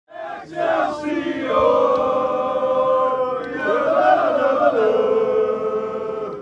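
A group of football supporters singing a club chant together in long held notes, the pitch rising and dropping back about four seconds in.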